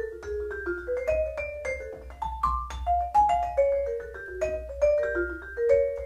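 Vibraphone played with four Mike Balter Titanium Series 323R mallets: a melodic line of quick single notes moving up and down, each with a clear attack and a ringing tail that overlaps the next.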